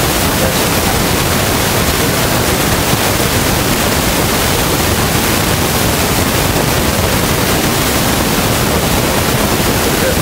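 Loud, steady hiss like static, spread evenly from low to high pitch, with no distinct events in it: noise in the recording itself, drowning out any speech.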